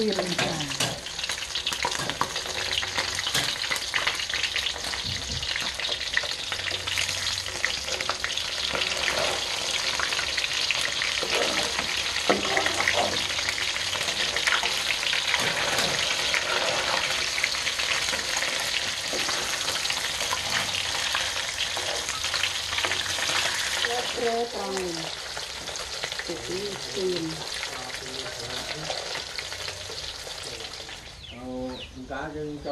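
Fish pieces frying in oil in a steel wok, with a steady sizzle. A metal spatula scrapes and clicks against the wok as the fish is turned.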